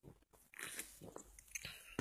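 A person drinking cream soda from an aluminium can: a sip about half a second in, then a few gulps and swallows.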